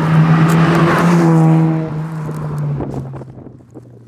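Mazda RX-7 FC3S with its twin-rotor rotary engine driving past at a steady note. It is loudest in the first second and a half, then fades away.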